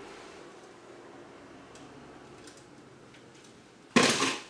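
Quiet room tone with a few faint, light ticks.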